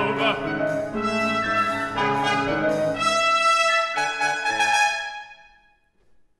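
Chamber orchestra playing held chords with brass on top, the harmony moving about once a second, then fading out to silence about five seconds in.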